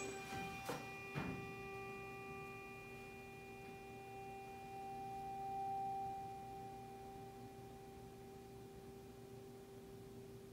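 A tuning fork ringing with a steady pure tone, held over the open end of a water-filled resonance tube that is being slowly drained to find the next resonance of the air column. A couple of light knocks come about a second in, and the tone swells a little about halfway through, then settles.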